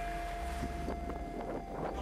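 Wind noise on the microphone, with a steady hum and a few light knocks through the middle.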